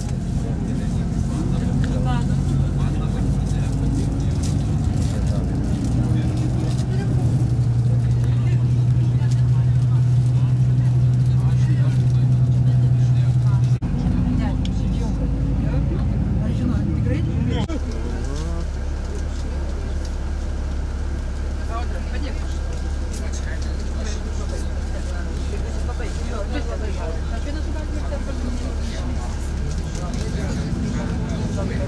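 Vehicle engine and road noise heard from inside a moving vehicle: a steady low engine hum, louder for several seconds in the first half, then settling after about two-thirds of the way to a lower, quieter steady hum, as when the vehicle slows and idles in traffic.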